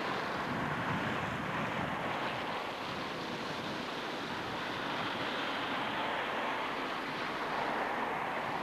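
Steady road noise of a car driving on a wet, flooded road, mostly tyre hiss on the water, with some wind on the microphone.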